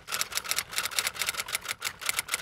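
Rapid, evenly spaced clicking, about ten clicks a second, like a typewriter. It is an intro sound effect laid under the title as it writes itself out.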